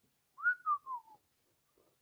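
A short whistled phrase of under a second: a single pure tone that rises, then steps down over three notes.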